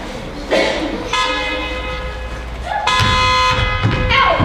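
Two long, steady horn-like tones: the first lasts about a second and a half, the second, louder and shorter, starts about three seconds in.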